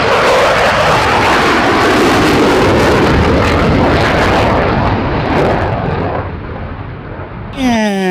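Eurofighter Typhoon fighter jet flying past with its twin afterburners lit: a loud jet roar. Its high end drops away about halfway through, and it fades over the last few seconds as the jet moves off.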